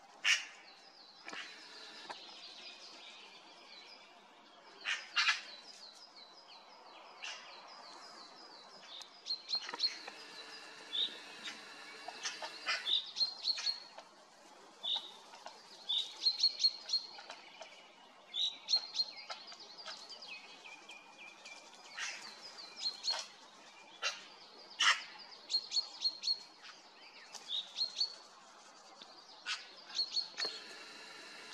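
Forest birds calling: many short, high chirps and trills, with a few louder, sharper calls scattered through.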